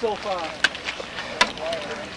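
Background crowd voices talking, with two sharp clicks, one about two-thirds of a second in and another about a second and a half in.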